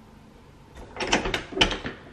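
A front door's lock and handle being worked: a cluster of metallic clicks and rattles about a second in, then a second cluster with a low thump near the end.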